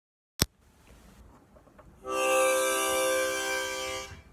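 A sharp click near the start. About two seconds in, a 10-hole diatonic harmonica sounds one long held chord that eases off slightly toward the end.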